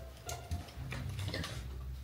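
A few faint, short clicks over a low background hum.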